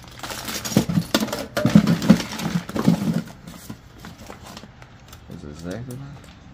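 A clear plastic bag of metal watch case backs crinkling and clinking as it is handled, with rummaging in a cardboard box; the handling is busiest in the first three seconds, then dies down. A brief voice comes in near the end.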